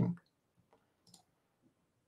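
A single faint click about a second in, from the computer as the presentation slide is advanced. It comes in near silence, just after the end of a spoken word.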